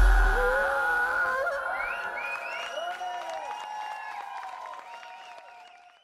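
A live rock band's last note ringing out, its deep bass dying away within the first half-second, followed by the audience cheering, whooping and clapping as the sound fades out.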